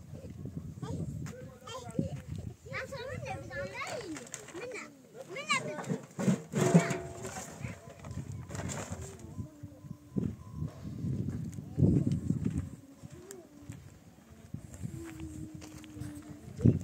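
Young children's voices chattering and calling out, some high and squealing, with a couple of sharp knocks.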